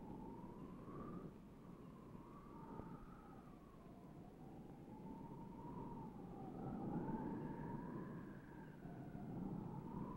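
A faint high tone wavering slowly up and down, at times joined by a second, higher gliding tone, over a low hiss.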